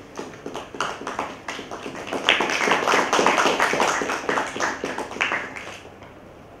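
Audience clapping: scattered claps that swell into full applause about two seconds in, then die away near the end.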